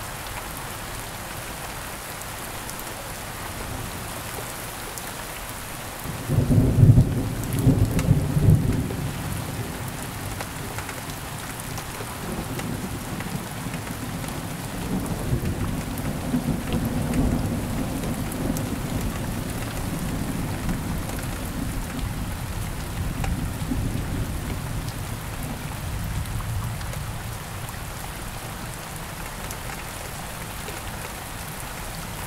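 Steady rain throughout, with a sudden loud thunderclap a few seconds in that cracks and rumbles for about three seconds. It is followed by a long, lower rolling rumble of thunder that dies away before the end.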